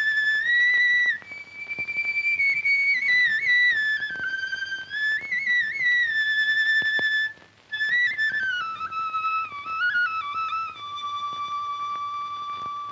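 Solo flute playing a slow, ornamented melody with slides between notes as film background score. It pauses briefly a little past the middle, drifts lower, and settles on a long held note near the end.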